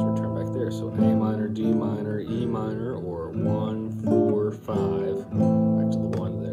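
Classical nylon-string guitar strumming the A minor, D minor and E minor chords, a few strums each left ringing, with a man's voice heard between the strums.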